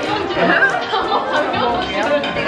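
Several voices talking over each other, with background music that has a light steady beat.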